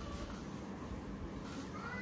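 A cat meowing in the background: a short faint call at the start, then a longer meow that rises and falls in pitch near the end.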